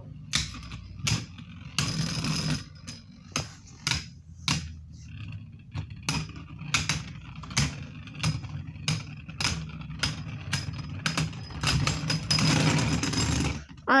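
Two Beyblade spinning tops whirring on a plastic stadium floor, clacking against each other in sharp, irregular hits. Near the end comes a louder scraping rattle as they lock together and stop, both at once, a tied round.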